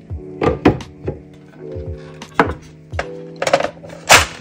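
Clear plastic stackable storage cases being handled: a series of sharp, hard-plastic knocks and clacks as the case parts are lifted and set down. Background music with sustained notes plays underneath.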